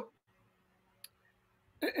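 Near silence with a single short click about halfway through, between a man's speech at the start and end.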